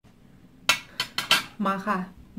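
Cutlery and ceramic plates clinking: about four sharp clinks in quick succession from under a second in, followed by a brief woman's voice.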